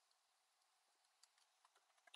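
Faint laptop keyboard typing: a few scattered, quiet key clicks, most of them in the second half.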